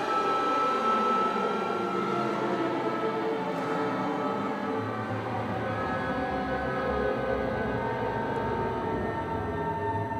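Symphony orchestra playing dense, sustained held tones, with a low note coming in about five seconds in.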